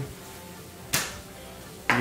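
A single sharp knock of a kitchen knife against a wooden cutting board, about halfway through, fading quickly.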